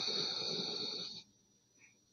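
A person's long, breathy exhale, with a slightly rough texture, stopping about a second in.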